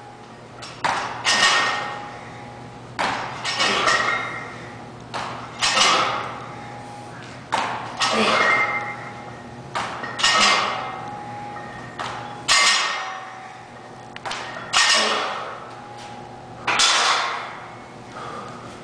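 A man's hard, forceful breaths with each barbell box-squat rep, about one every two seconds, eight in all, with a brief ring from the barbell plates on several reps.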